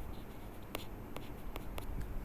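Stylus tip tapping and scraping on a tablet's writing surface while drawing: about five sharp clicks in the second half, over a low room hum.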